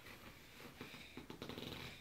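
A quiet room with faint rustling and a few soft clicks.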